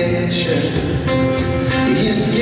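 Acoustic guitar strummed live with a man singing over it, held vocal notes above a few strummed chords.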